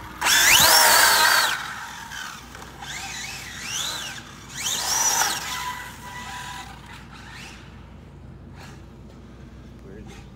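Arrma Infraction RC truck's high-power brushless electric motor whining in three bursts of throttle, each pitch climbing and then falling back as the car speeds up and slows, the first burst the loudest, with tyre noise on asphalt. Quieter from about halfway.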